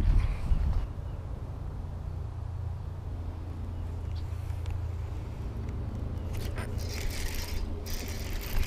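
Steady low wind rumble on the microphone, with a short hiss near the end.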